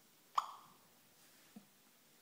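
Voice-assistant app on an iPhone 4 sounding a single short electronic blip with a brief ringing tail, the cue that it has stopped listening and is working on the spoken question. A faint low click follows about a second later.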